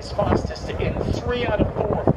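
Trackside public-address commentary, echoing and half-heard, with wind buffeting the microphone.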